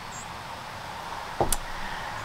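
Steady low background noise with one short, sharp click about one and a half seconds in.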